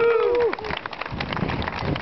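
A crowd applauding, a dense patter of many hand claps. A man's held "woo" shout over it ends about half a second in.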